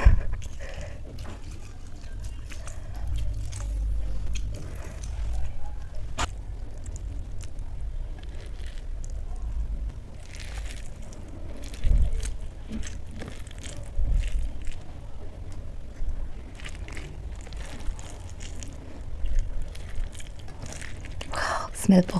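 Hand mixing rice with dal and fried chili chips on a steel plate, heard close up: wet squishing and small crunches with scattered clicks, and a sharp click about six seconds in.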